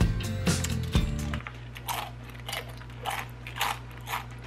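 Background music cuts off about a second and a half in. Then comes chewing of crunchy Samyang spicy chips, with a crunch about every half second.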